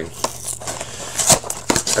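Handling noise from hockey card packs and cards on a table: a few sharp clicks with light rustling and crinkling in between.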